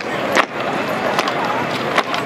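Sharp clacks and knocks from an honor guard's drill rifles being handled in a rifle drill routine, the loudest about half a second in and at the end, over a steady murmur of crowd chatter.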